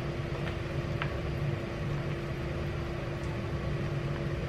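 A steady low mechanical hum, with a few light clicks of a utensil against a plastic tub as potato salad is stirred.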